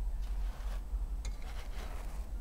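Hands handling wooden kalimbas on artificial turf, setting one down and picking up another: irregular rustling with a sharp click just over a second in.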